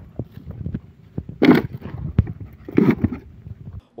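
Rustling and crunching of dry leaf litter and debris on the ground, with a few light knocks over a low rumble of handling or wind noise on a phone microphone. Two louder rustles come about one and a half and three seconds in, and the sound cuts off just before the end.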